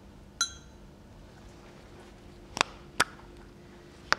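A light clink with a brief ring, then two sharp clicks about half a second apart near the end: a small acrylic paint pot being picked up and its lid opened.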